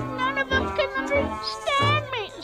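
Christmas music with a singing voice playing in the room, and a cat meowing once near the end.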